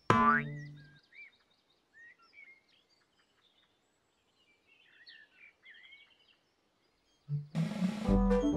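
A cartoon 'boing' sound effect, a springy twang falling sharply in pitch and dying away over about a second, marks the watering can popping into view. Faint bird chirps follow, and bouncy children's music starts near the end.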